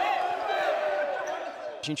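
A group of young men shouting and cheering together in a celebration huddle, with feet thumping on the wooden court floor. A single man's voice starts speaking near the end.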